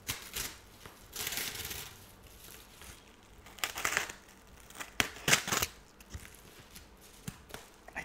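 White padded paper mailer envelope being handled and torn open: several bursts of crinkling and tearing paper, the loudest about five seconds in.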